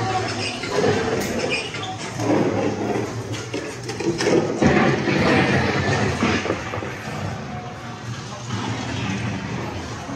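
Mr. Toad's Wild Ride dark-ride car in motion, its running noise mixed with the attraction's show audio of music and voices in a dense, rushing blend over a steady low hum. The sound shifts to a new, noisier passage about halfway through.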